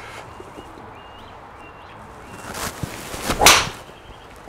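PXG Black Ops driver swung at a teed golf ball: a rising swish through the air, then a sharp crack as the clubface strikes the ball about three and a half seconds in.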